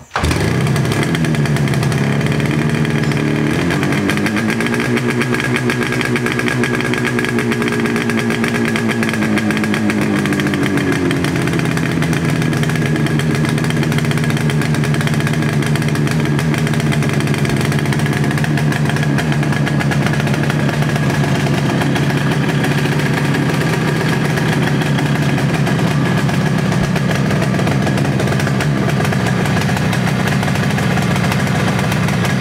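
Yamaha RD350's two-stroke parallel-twin engine catching right after a kick-start. It is revved up about four seconds in and held there for several seconds, then drops back to a steady idle about ten seconds in.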